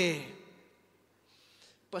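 A man's amplified speaking voice ends a phrase on a falling pitch, then a quiet pause of about a second with a faint breath drawn in before speech starts again at the very end.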